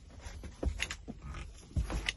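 Several dull thumps and short knocks with some rustling, from a person moving about inside a truck cab and from the phone being handled. The loudest thumps come about two-thirds of a second in and near the end.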